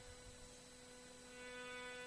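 Near silence with a faint steady hum, which swells a little past the middle.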